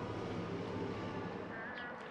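A steady, low mechanical hum with light outdoor background noise.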